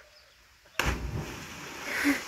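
A person plunging into lake water after a cliff jump: one sudden loud splash a little under a second in, followed by the spray and water settling for about a second.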